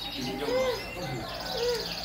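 Many caged canaries singing at once: overlapping quick high warbles and falling notes, with a fast, even trill in the second half.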